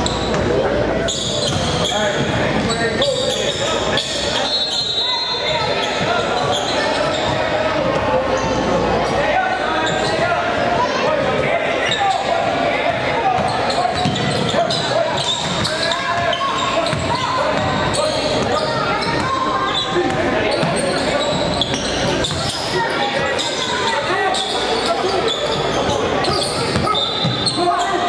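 Basketball game sounds in a gym: a ball bouncing on the hardwood floor under indistinct shouting and chatter from players and spectators, echoing in the large hall.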